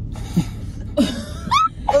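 A few short, sharp cough-like vocal bursts from a person, one ending in a brief rising sound, over a steady low hum.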